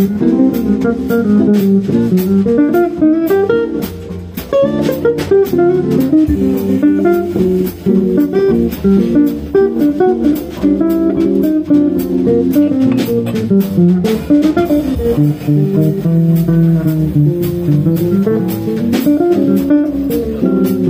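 Live jazz group of two guitars, double bass, violin and drum kit playing, the guitars to the fore over the walking bass, with regular short drum or cymbal strokes.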